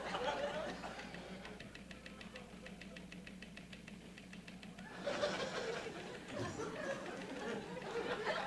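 Audience laughter, faint and scattered at first, then swelling louder about five seconds in, over a steady low hum.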